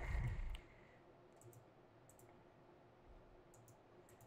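Faint, scattered clicks from a computer mouse and keyboard: a couple about a second and a half in, one near three seconds, and a pair near the end. A short, louder low noise comes right at the start.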